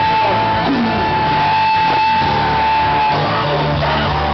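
Live rock band playing loud with electric guitar and drums, a long high note held for about the first three seconds before the band carries on.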